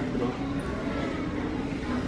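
Steady background hum of a large store hall with faint, distant voices.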